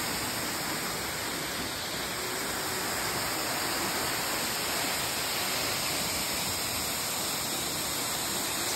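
Glencar Waterfall: a steady, even rush of falling water.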